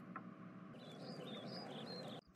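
Faint bird chirps over a soft, even hiss, coming in about three-quarters of a second in.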